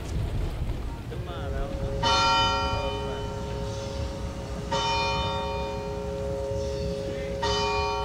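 A bell struck slowly three times, about every two and a half to three seconds, each stroke ringing out and fading over a held lower tone.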